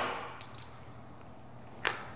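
Quiet room tone with a faint click about half a second in and a sharper single click near the end.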